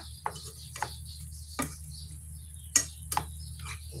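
Wooden spatula knocking and scraping against a metal frying pan while stirring chicken adobo, a handful of irregular taps over a steady low hum.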